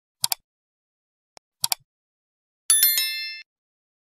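Like-and-subscribe animation sound effects: two quick double mouse clicks about a second and a half apart, then a bright notification bell chime, the loudest sound, ringing out in under a second.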